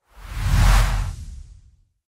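A whoosh transition sound effect with a deep low rumble under a hiss, swelling to a peak just under a second in and fading out before two seconds.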